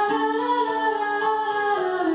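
A woman's voice singing one long held note that rises slightly in pitch and then falls, over a steady lower sustained note.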